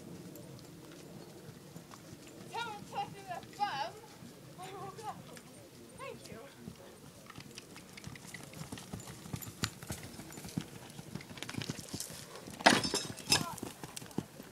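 Hoofbeats of a horse cantering on a sand arena, a run of dull thuds that starts faint and grows loud in the last few seconds as the horse comes up close.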